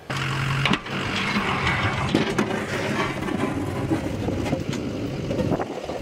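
A plow truck running and moving through snow, with a steady rough rushing noise and a low hum in the first moment.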